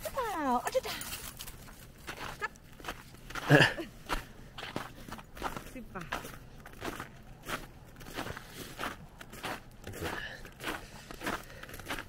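Footsteps crunching in snow at a steady walking pace, about two steps a second. A short falling voice-like sound comes right at the start, and a louder brief sound about three and a half seconds in.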